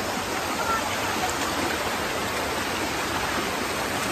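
Water from a waterfall running over rock ledges: a steady rushing noise.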